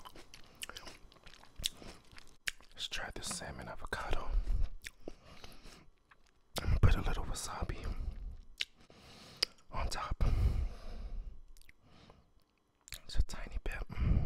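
Close-miked chewing and wet mouth sounds of a person eating sushi, in several bouts with short pauses between them, with sharp little clicks scattered through.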